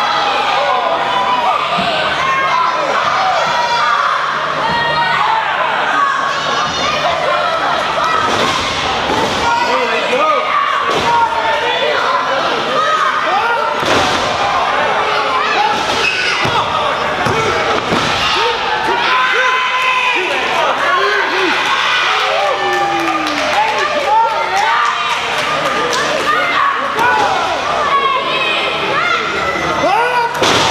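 Wrestlers' bodies slamming onto a wrestling ring's canvas mat, several heavy thuds in the middle of the stretch, over a crowd of spectators shouting and calling out in a large hall.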